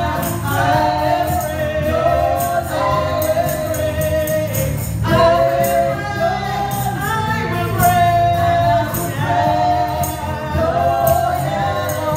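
Live gospel worship song: several women singing together into microphones over a band of electric guitars, bass and drums, with a steady beat of percussion hits.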